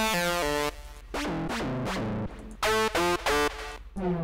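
Kepler EXO software synthesizer playing preset notes: a short chord, a longer held note, then two short stabs.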